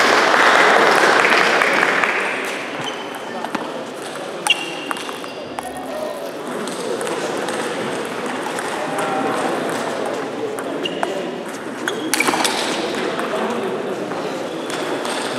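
Table tennis ball hits: sharp pings of the ball off the bats and table, in a few short groups during rallies, over the steady chatter of a large hall. A loud wash of hall noise fills the first couple of seconds.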